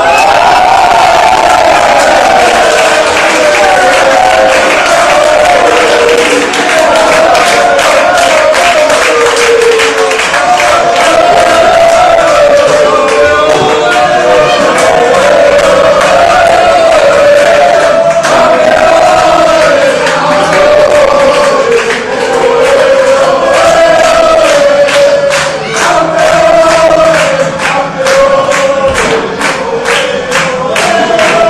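Many voices singing one melody together, like a football crowd or choir singing a club song, loud throughout. A regular beat of claps or drum strokes sounds under the singing, plainer over the second half.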